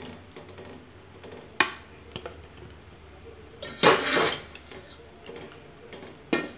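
Stainless-steel mesh skimmer knocking and scraping against an aluminium pot as boiled grapes are scooped out, with a sharp clink about one and a half seconds in and a longer, louder clatter around four seconds in.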